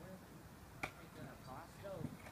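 A single sharp click a little under a second in, followed by faint distant voices near the end.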